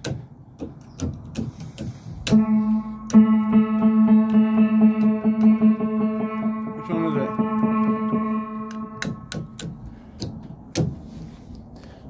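Upright piano lying on its back being played by hand: key presses give sharp clicks and knocks from the action, and a little over two seconds in one note sounds, is struck again, and rings on for several seconds before dying away. Laid on its back, the action works poorly: some keys still sound, but not as well as usual.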